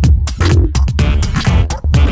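Electronic dance music from a 2000s dance-hits DJ mix, with a driving steady beat and heavy bass.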